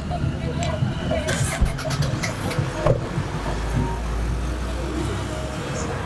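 A car door shutting about a second and a half in, then a car engine starting and running with a low steady hum.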